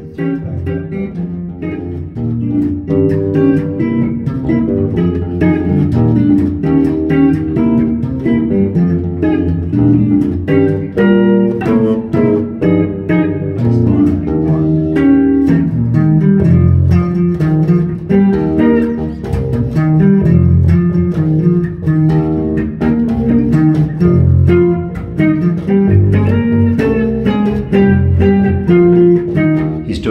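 Electric bass guitar walking a jazz bass line under an archtop guitar, the two playing a bebop tune together. The bass notes are fretted cleanly, without buzzing or rattling.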